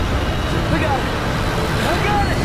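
Loud, steady low rumble of an airliner in flight, with a few short shouted voices about a second in and again near the end.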